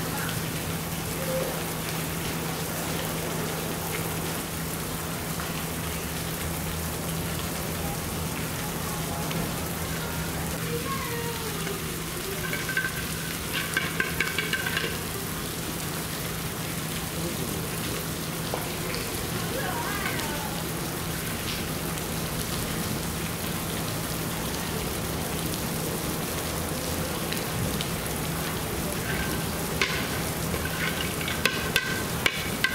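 Steady hiss of running water in a zoo polar bear enclosure, with a low steady hum underneath and faint visitor voices; a few short, high-pitched sounds stand out briefly about halfway through.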